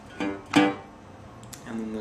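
Resonator guitar in open G tuning: the thumb plucks a bass string twice, about a third of a second apart, a pulsating bass note that then rings and fades.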